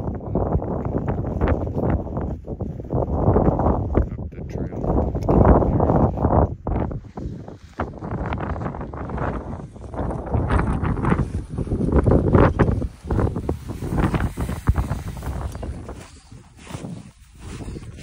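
Wind blowing across the microphone in uneven gusts, a low noise that swells and drops.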